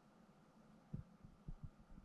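Near silence: a faint steady hum, with a few soft, low thumps starting about a second in, typical of handling noise from a handheld camera.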